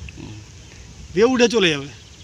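A man speaking: about a second of pause, then a short spoken phrase.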